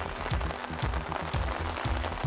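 Rain sound effect, a steady hiss of falling rain, under background music.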